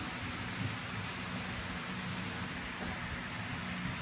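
Steady hiss of background noise with a faint low hum underneath, no distinct events.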